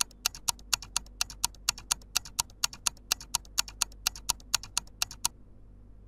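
Countdown timer ticking sound effect: sharp, evenly spaced ticks, about four a second, stopping about five seconds in.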